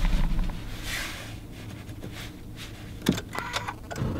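Handling rustle and low rumble inside a car cabin, then a sharp click about three seconds in followed by a short tone, as the push-button ignition is pressed to try to start a car that broke down the day before.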